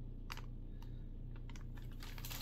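A few faint, sharp crackles of plastic candy bags being handled, spaced out and a little quicker near the end, over a low steady hum.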